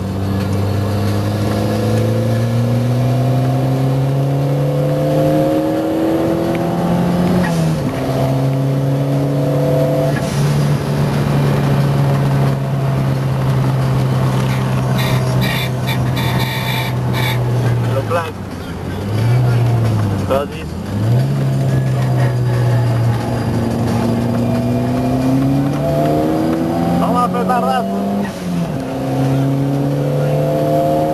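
A car engine driven hard on a race circuit. It climbs in pitch under full throttle and drops at an upshift about seven seconds in, then holds a steady high note for about ten seconds. Near the twenty-second mark it dips twice as the driver brakes and changes down, then climbs again through the gears, with another shift near the end.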